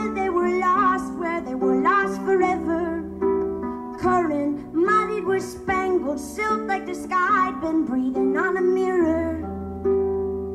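Solo harp playing plucked chords and runs under a woman's singing voice that slides between notes. The voice drops out about nine and a half seconds in, leaving the harp ringing on alone.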